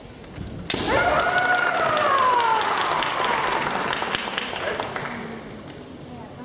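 A kendo strike: a bamboo shinai cracks sharply onto the opponent's armour, and at the same moment a fighter lets out a long, loud kiai shout that starts high and falls slowly in pitch over about three seconds.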